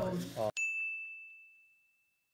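A single bright ding sound effect: one sharp strike with a clear high ringing tone that fades away over about a second and a half, laid over silence after the talking cuts off about a quarter of the way in.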